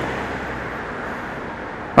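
Road traffic noise: a passing vehicle's steady rumble fades away, leaving an even hum.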